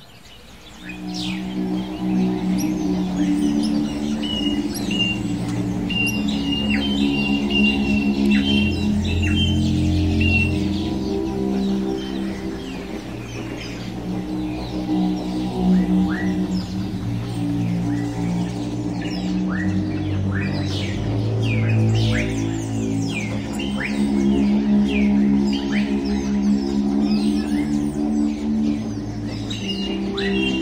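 Background music of slow, sustained chords, with many small birds chirping and calling over it; a run of short repeated high notes sounds from about four to eleven seconds in.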